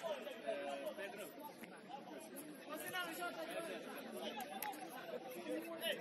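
Several voices talking and calling out at once, overlapping and indistinct.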